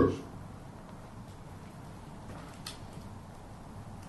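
Quiet room tone with a faint hiss and a few sparse faint ticks from a wood fire crackling in an open hearth, the sharpest tick about two-thirds of the way through.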